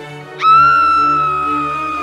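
Background music with a loud, high whistle sound effect that rises sharply about half a second in, then holds one pitch and slowly sags.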